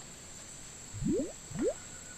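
A faint background with three short rising bloops, like drops plopping or bubbles rising in water: two close together about a second in, and one more near the end.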